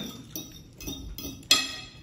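Metal cutlery clinking and tapping against dishes during a meal, a few light clicks with one sharp, ringing clink about one and a half seconds in.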